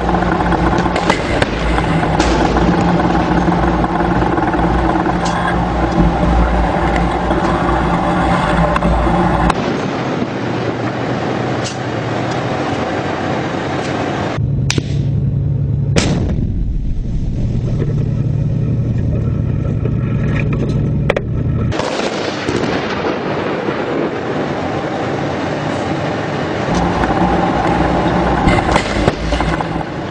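Tank engine running with a steady low drone, with scattered sharp shots cracking over it. The sound changes abruptly several times, the drone dropping away around ten seconds in and returning near the end.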